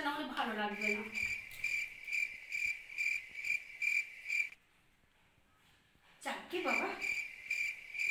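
Cricket chirping steadily, about two to three chirps a second. It drops out with all other sound for over a second about halfway through, then resumes.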